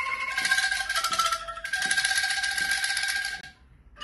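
An angklung group playing: bamboo angklungs shaken in a continuous rattling tremolo, sounding held notes that change a few times as a simple melody. The playing stops suddenly about three and a half seconds in.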